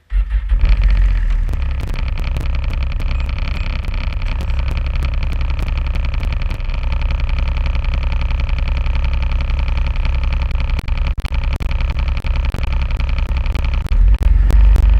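Snowmobile engine idling close by: a steady low drone with a higher whine above it, starting suddenly at the outset. Sharp clicks run through it and grow more frequent near the end.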